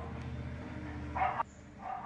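A dog barking once, a short bark about a second in, over a low steady hum that stops soon after.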